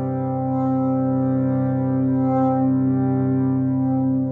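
Harmonium holding a steady low drone of several notes at once, with a softer held tone above it that fades out just at the end.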